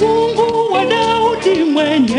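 Gospel song: a singing voice comes in with a bending, wavering melodic line over the instrumental accompaniment, sliding down in pitch near the end.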